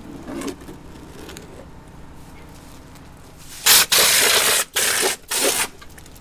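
Hopper-type compressed-air plaster sprayer shooting sand-clay plaster onto a wall in three loud hissing blasts, the first and longest about a second, starting a little past halfway. Before them, softer scraping as the hopper is loaded with the mix.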